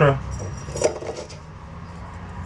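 A voice trails off, then a faint steady low hum of room tone, broken by a single light click a little under a second in.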